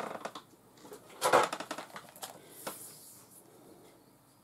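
Rustles and light clicks from handling a towel and a tape measure on a cutting mat. The loudest rustle comes about a second in, and the sounds fade toward the end.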